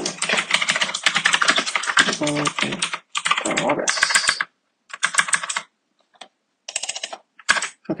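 Fast typing on a computer keyboard, in quick runs of keystrokes broken by short pauses.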